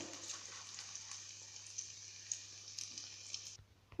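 Eggs frying in hot oil in a pan: a faint, steady sizzle with a few small crackles, which cuts off suddenly near the end.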